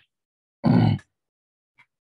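A man's short grunt-like vocal sound, once, about half a second in, lasting under half a second with a slightly falling pitch.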